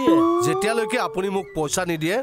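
A drawn-out, howl-like vocal note that rises slightly in pitch, held for about a second and a half over background music.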